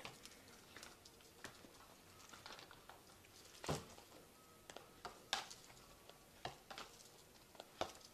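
Faint, scattered soft taps and rustles of oracle cards being handled and drawn by hand, the loudest a soft knock a little before four seconds in.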